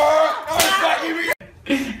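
Hand slaps landing on a person, mixed with a loud voice crying out, cut off abruptly a little past halfway.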